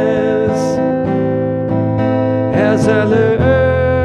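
Man singing long held notes into a microphone over a strummed acoustic guitar, unplugged, in a song tuned to 432 Hz.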